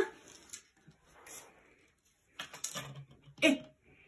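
Faint handling noise, then a few short knocks as a painted lizard figure is brought back and set down on a tabletop, followed by a brief spoken "I" near the end.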